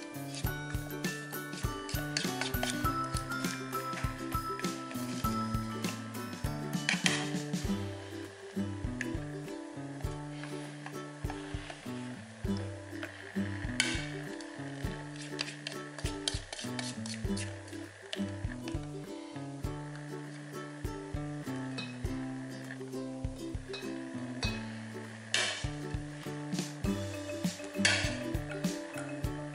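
Background music with a melody, over a wire whisk clicking and scraping against a stainless steel mixing bowl as meringue is folded into egg batter, with a few sharper knocks.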